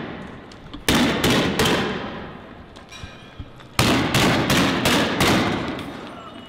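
Two rapid volleys of loud shots, each bang echoing off the street: four in quick succession about a second in, then five more starting near four seconds in.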